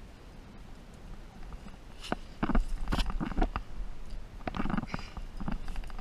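A climber's hands and sleeves scraping and tapping against rough rock as he moves up a crack, a run of irregular short scrapes and knocks starting about two seconds in, with wind rumbling on the microphone.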